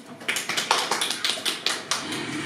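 Scattered applause from a small audience: separate, unevenly spaced hand claps.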